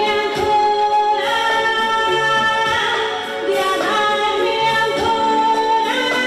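A woman singing solo into a handheld microphone, holding long notes that change pitch every second or two.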